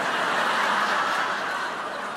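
Audience laughing together at a joke, swelling at once and then slowly dying away.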